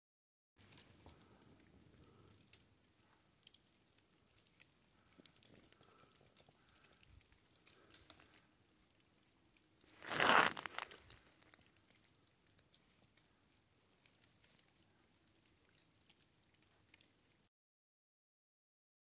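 Quiet snowy woods: faint, scattered light crackling and pattering, with one brief louder rush of noise lasting under a second about ten seconds in.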